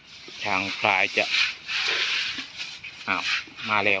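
A brief rustling hiss from Asian elephants, a mother and calf, at a pile of fresh-cut grass, coming between two short remarks by a man.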